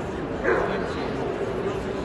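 A dog barks once, short and sharp, about half a second in, over the steady chatter of people in a large hall.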